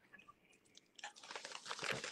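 Crackling, crunchy noise through a phone live-stream's audio, starting about a second in and growing louder.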